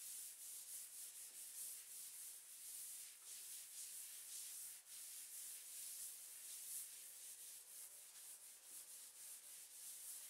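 Faint rasping of wet and dry sandpaper used with water, rubbed by hand in repeated back-and-forth strokes over a wooden tabletop to key the surface for paint.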